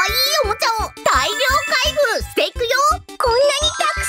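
Upbeat children's background music with a steady beat, about four beats a second, overlaid with bright sparkling chime sound effects and a high-pitched cartoon-character voice talking.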